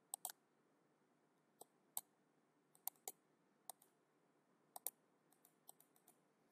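Computer mouse clicking: about ten faint, short clicks spread unevenly, several in quick pairs, over otherwise near-silent room tone.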